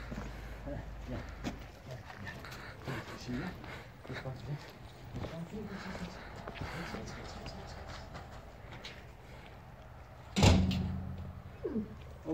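Faint scattered clicks and scuffs, then a single loud thump about ten seconds in whose low end rings on for about a second.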